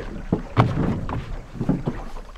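A jon boat's hull knocking and thumping several times as a person steps aboard from a dock and sits down, with wind on the microphone.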